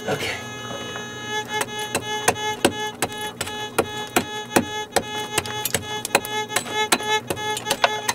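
A small hand pick chopping into the clay and rock floor of a mine tunnel, about three to four quick strikes a second from a second and a half in, to dig out a detector target. Fiddle music plays underneath.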